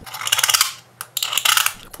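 A utility-knife razor blade scraping along the iPhone X's stainless steel side frame in two strokes, each a rapid scratching, with a single click between them about a second in.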